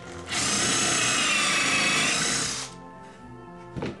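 Handheld power drill boring a pilot hole into a pine board: a steady whine that starts just after the beginning and stops after about two and a half seconds, with a sharp click near the end.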